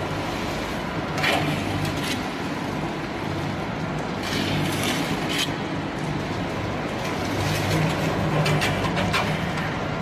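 Disc fertilizer granulator running with a steady low drive hum, granules spilling off the rotating pan onto a pile. Short hissing rattles of falling granules come about a second in, again around four to five seconds, and near the end.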